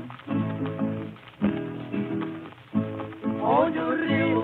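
Instrumental break of a 1951 cururu played from a 78 rpm shellac record: strummed and plucked guitars in a steady, choppy rhythm, with the thin, narrow sound of an old recording. A voice glides in near the end.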